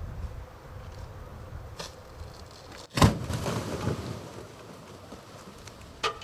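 Decomposing sperm whale carcass bursting open as it is cut: wind on the microphone, then about three seconds in a sudden loud burst followed by a rush of spilling innards that fades over a second or two. The burst is caused by methane built up from decomposition.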